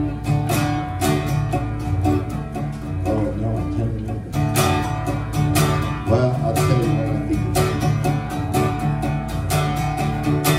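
Acoustic guitar playing a song's instrumental intro: a steady rhythm of picked and strummed chords, about three to four strokes a second.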